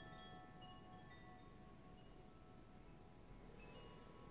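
Faint, held chime tones at several pitches, overlapping and changing slowly, over near silence.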